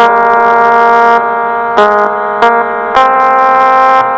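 Casio SA-11 electronic keyboard playing a one-finger melody, one sustained note at a time: a long note held for nearly two seconds, then three shorter notes in quick succession.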